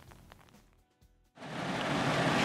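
Faint sound dying away to near silence, then, about one and a half seconds in, a sudden steady loud hiss of heavy rain on a car, heard from inside its cabin.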